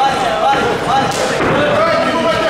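Voices shouting around a Muay Thai bout, with a sharp smack of a strike landing about a second in.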